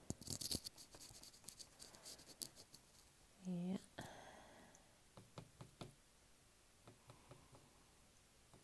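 Paintbrush scrubbing and dabbing acrylic paint onto paper: a quick run of faint scratchy strokes over the first two and a half seconds, then a few scattered soft ticks. A short hum from the painter comes about three and a half seconds in.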